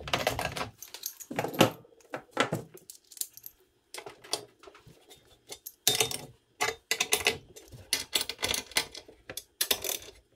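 Irregular metal clicks and clinks of a wrench working the bolts on a RotoPax fuel can's mounting plate, with tools set down on a wooden bench. The clicking comes quicker and busier from about six seconds in.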